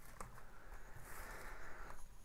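Faint rustling of plastic shrink-wrap and handling of a sealed CD digipak in the hands, with a small click shortly after the start.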